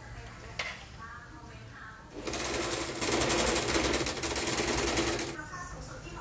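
Small domestic electric sewing machine running in one loud burst of about three seconds, starting a little over two seconds in, with a fast, even needle rhythm as it stitches nylon webbing. A single click comes shortly before it.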